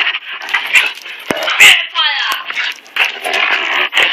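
A German Shepherd and a German Shepherd/Rottweiler mix play fighting, growling and snarling in rough bursts with jaws open. About two seconds in, one of them gives a short whine that falls steeply in pitch.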